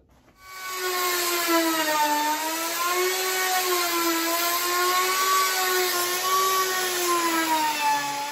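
Festool OF 1400 router with a 2-inch spoilboard surfacing bit running steadily and cutting as it is passed across a glued-up pine slab in a flattening jig; its whine wavers slightly in pitch as the load changes. It starts about half a second in.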